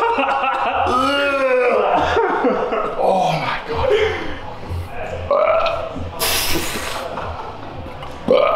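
A man groaning and gasping after taking a hard punch to the stomach: drawn-out, wavering moans, then a forceful breath blown out for about a second near the end.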